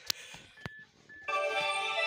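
Xhorse Key Tool Max Pro handheld key programmer playing its musical startup chime as it boots. The chime is a steady ringing of several tones together, starting about a second and a half in, after a couple of light clicks.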